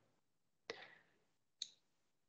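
Near silence broken by two faint clicks about a second apart, the second shorter and sharper: a computer mouse being clicked.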